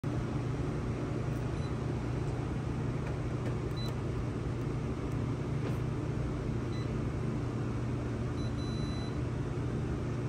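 Steady low hum of a Toshiba e-Studio multifunction copier running at idle, with a few faint short beeps from its touch panel as the screen is tapped.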